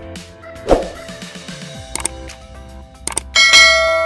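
Outro sound effects of the kind that go with a subscribe-button animation: a short swoosh about a second in, a few sharp clicks, then a bright ringing ding near the end that rings on as it fades.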